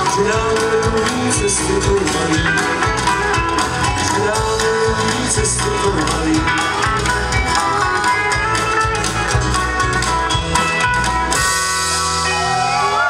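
Live band playing an up-tempo song with banjos, guitar and drums. About eleven seconds in the music stops and the crowd cheers.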